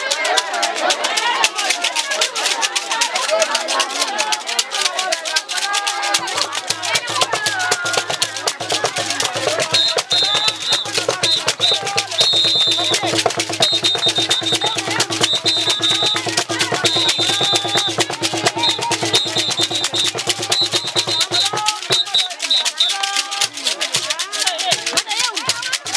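Several handheld stacked-disc rattles shaken in a fast, dense rhythm, with voices singing and calling and hands clapping. A steady low hum joins about six seconds in and stops near the end.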